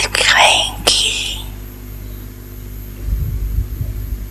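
A slow, breathy voice speaking Hindi close into a microphone for about the first second and a half, then a pause filled by a steady electrical hum. A low rumble on the microphone comes near the end.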